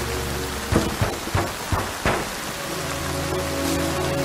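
Steady rain with a run of five heavy, sharp thuds starting about a second in and spread over about a second and a half, over a low music drone that fades out during the thuds and returns near the end.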